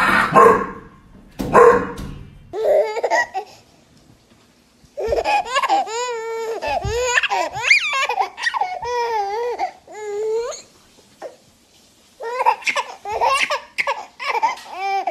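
A dog barks twice in the first two seconds. After that, a baby laughs and babbles in high, wavering bursts, stopping briefly a couple of seconds before the end.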